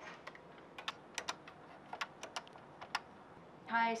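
Keys on a desk telephone's keypad being pressed, a dozen or so light clicks at uneven intervals, as voicemail is keyed up for playback. A recorded voice starts just before the end.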